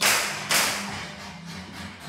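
Two sharp knocks about half a second apart, from trim carpentry on wood molding, each dying away quickly.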